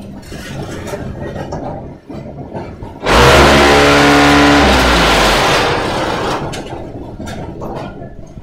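Concrete block-making machine's vibrator motors starting abruptly about three seconds in. They run as a loud, harsh hum for a second and a half, then drop in pitch and fade as they spin down, the vibration step that compacts concrete in the mould.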